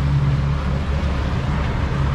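Boat's outboard engine running under way, a steady low drone, with steady wind and water noise over it.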